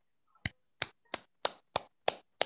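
One person clapping slowly: single sharp hand claps, evenly spaced at about three a second, heard over a video call.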